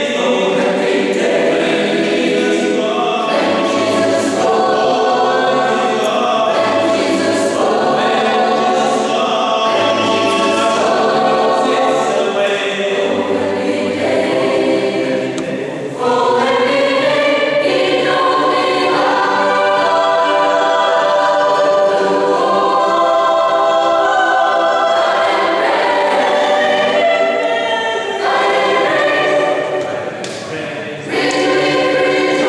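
Mixed choir of men's and women's voices singing in harmony, holding sustained chords, with a short break between phrases about halfway through.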